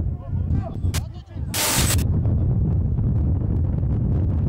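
Wind buffeting the camera microphone with a steady low rumble, with distant shouts from players early on. About a second and a half in there is a sudden loud burst of noise lasting half a second, just after a sharp snap.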